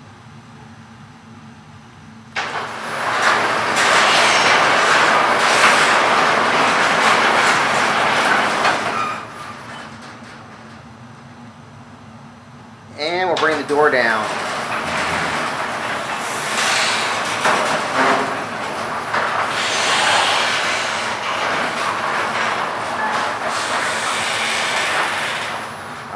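Genie garage door opener, just fitted with new control and motor-drive boards, raising the sectional door for about seven seconds, stopping, then after a pause of a few seconds lowering it for about twelve seconds. The opener and the door rolling in its tracks run steadily, and the opener is working again after the board swap.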